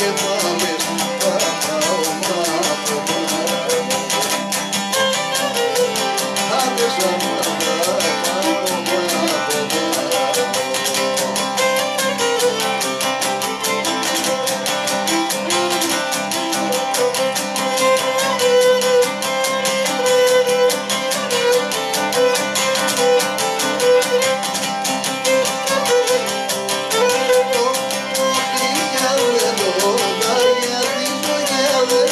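Cretan lyra bowing a syrtos melody over a laouto strumming a fast, steady rhythm.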